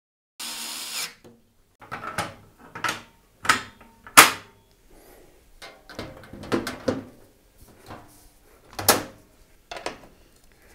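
Parts of a Lian Li O11 Dynamic EVO RGB PC case being handled: a brief sliding scrape, then a string of sharp clicks and knocks as the fan bracket is set in place and the case is moved, the loudest about four seconds in.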